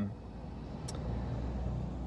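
Low, steady rumble of road traffic heard from inside a parked car, growing louder about a second in. A faint click comes just before it swells.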